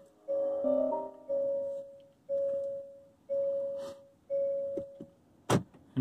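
Hyundai Kona Electric's dashboard chimes as the car is switched on: a short multi-note startup chime, then a single-tone chime repeating about once a second. A sharp click follows near the end.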